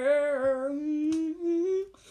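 A voice humming one long sung note that wavers slightly, then slides upward near the end and stops.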